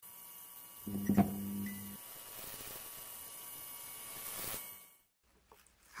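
Electric hum and buzz from an intro logo sound effect, with steady thin high tones. A low buzz swells for about a second starting about a second in, and everything fades out about five seconds in.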